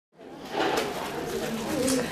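A man's low, wordless voice through a handheld microphone over room noise, fading in from silence.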